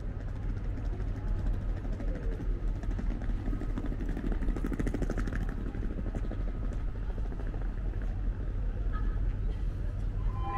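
A steady low rumble, with an engine passing that is loudest about four to five seconds in.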